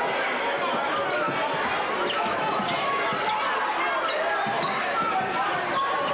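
Gymnasium crowd talking and calling out all at once, with a basketball bouncing on the hardwood court.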